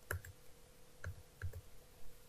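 Computer keyboard keys clicking: three or four short, separate key presses as a value is typed and entered at a command prompt.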